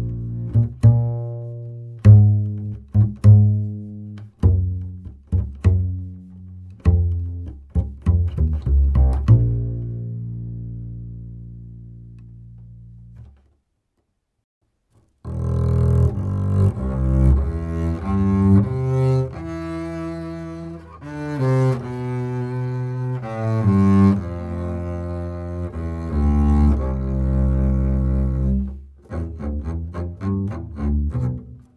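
1960 Otto Rubner double bass with Gut-a-Like SwingKing strings (a synthetic gut substitute), first plucked pizzicato in a pop style: a run of short low notes, each struck and decaying, ending on one long ringing note. After a brief silence about 13 s in, it is played with the bow: sustained, connected notes through the end.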